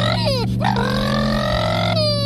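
A pitched, voice-like sound that slides down in pitch about half a second in, then rises again, over steady low held notes of an added soundtrack.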